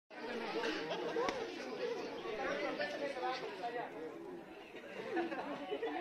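Overlapping chatter of many people talking at once, no single voice standing out. A single sharp click a little over a second in.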